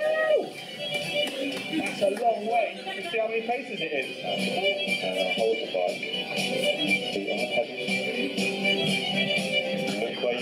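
Background music with a voice talking over it, played back from a projected video through a room's loudspeakers.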